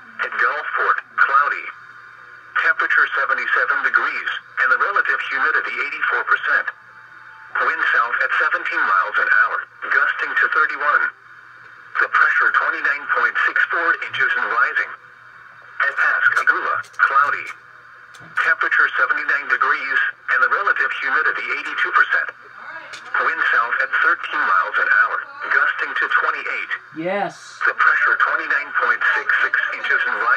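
Automated voice on a NOAA Weather Radio reading out local weather observations, thin and tinny through the radio's small speaker, in phrases of a few seconds separated by short pauses.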